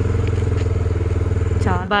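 Motorbike engine running at a steady speed while riding, a steady low hum that falls away near the end as a voice starts.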